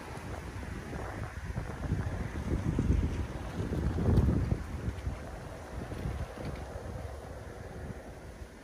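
Wind buffeting the microphone: an uneven low rumble that swells twice, about three seconds in and again about four seconds in, before settling back.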